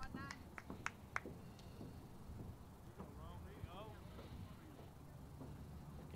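Quiet ballpark background between pitches: a few sharp clicks in the first second or so, then faint distant voices around the middle, over a low steady hum.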